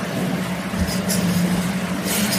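Steady low mechanical hum over a continuous rushing background noise, with no break or change in level.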